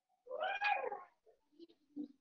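A single meow-like animal call, rising then falling in pitch over under a second, followed by a few faint short sounds near the end.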